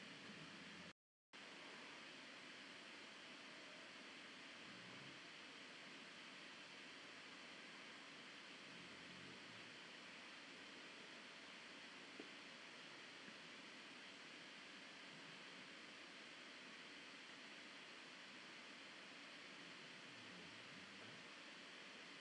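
Near silence: a steady faint hiss of the recording's noise floor.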